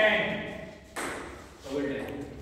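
A table tennis ball giving one sharp click about a second in, with a short ring after it. Voices speak at the start and again near the end, echoing in a hall.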